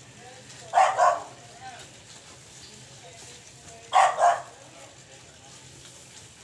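A dog barking: two quick double barks, the second pair about three seconds after the first.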